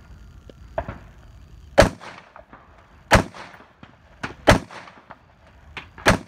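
Three rifle shots, evenly spaced about 1.3 seconds apart, fired from prone at long-range targets, each with a short echoing tail. A fainter crack comes about a second in.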